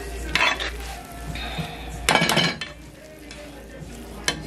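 A metal utensil scraping and knocking against a pot as stiff turned cornmeal is stirred and folded over. The louder scrapes come about half a second in and about two seconds in.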